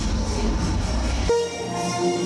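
Orchestral film music with a low rumble under it. The rumble cuts off about a second and a half in, and held orchestral notes carry on.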